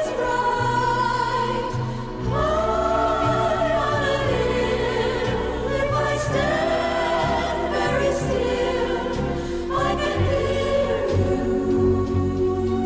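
A 1960s easy-listening orchestra and chorus: a chorus sings long, held phrases over strings and a steady bass line.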